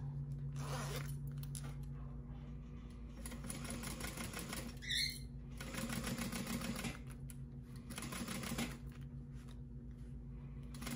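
Juki industrial sewing machine running a basting seam through vinyl in several short runs of rapid, even stitching with pauses between them. A brief high chirp sounds about halfway through.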